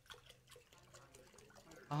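Water pouring from a plastic gallon jug into a stoneware crock, a faint steady trickle.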